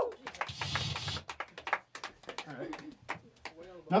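Scattered clapping from a small audience as a song ends, with a brief louder burst of noise about half a second in and faint voices near the end.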